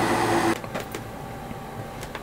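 Steady hum of a hobby spray booth's exhaust fan that cuts off suddenly about half a second in, leaving quieter room tone with a few faint clicks.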